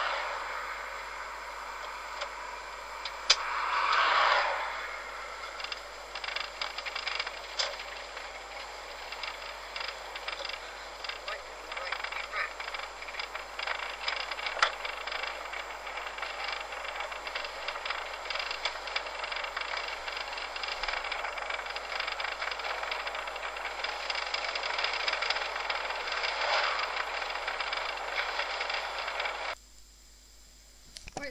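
Steady engine and road noise inside a moving Volkswagen, recorded on cassette tape, with a rapid little ticking and rattling running through it. There is a louder swell about four seconds in, and the sound stops abruptly near the end.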